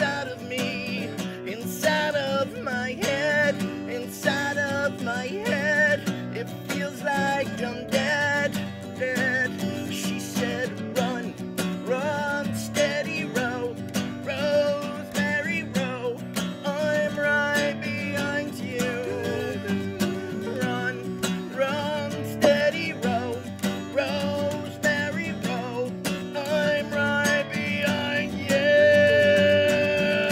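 Two acoustic guitars playing a song together: strummed chords with a melody line that slides and wavers in pitch over them.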